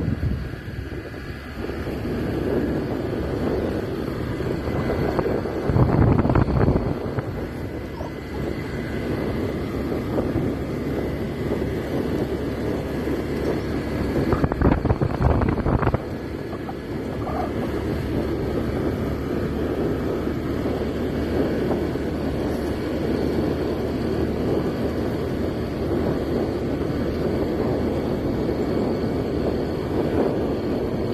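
Small motorbike engine running steadily under way, with wind rushing over the microphone; the wind gets louder twice, briefly about six seconds in and again for a second or two around the middle.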